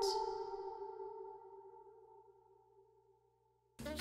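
Reverb tail of a sung vocal note through a convolution reverb built from the R1 nuclear reactor hall impulse response: the held note rings on and fades smoothly away over about two seconds, leaving silence.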